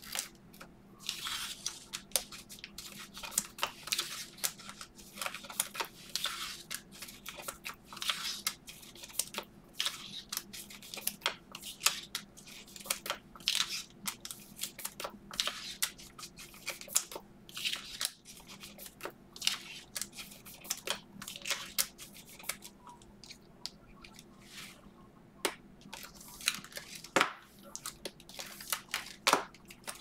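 Trading cards being handled and slipped into soft plastic penny sleeves and rigid plastic top loaders: many short, irregular plastic rustles, crinkles and clicks.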